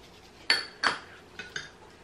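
A small metal measuring spoon clinking: two sharp clinks with a short ring, then two fainter clicks, while measuring dry ingredients.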